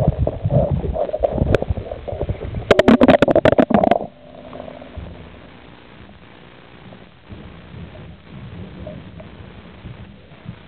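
Underwater sound picked up by a waterproof camera just after it plunges into a swimming pool: muffled churning water and bubbles, with a quick run of clicks and knocks about three seconds in. About four seconds in it drops off suddenly to a low, steady underwater hum as the camera settles.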